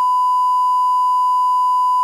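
Television line-up test tone played with colour bars: one loud, steady, pure beep held at a single pitch.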